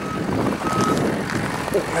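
A high electronic beep, like a reversing alarm, sounding about once a second over the steady noise of a running vehicle.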